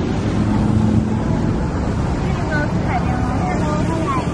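Steady low drone of motor engines, with a constant hum that shifts in pitch about halfway through. People's voices come in over it in the second half.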